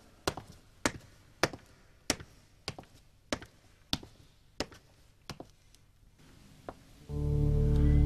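Hard-soled footsteps on a concrete floor, a steady walking pace of sharp single steps a little over one a second. About seven seconds in, a loud, low, sustained music chord comes in.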